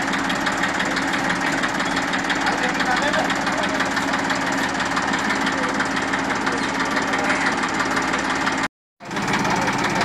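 TAFE 45 DI tractor's diesel engine idling steadily, with a regular firing beat. The sound cuts out for a moment near the end, then resumes.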